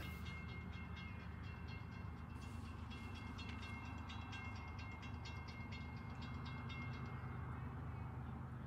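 Faint rumble of an approaching freight train's diesel locomotives, still out of sight. A rapid high ticking with ringing tones sounds over it and dies away near the end.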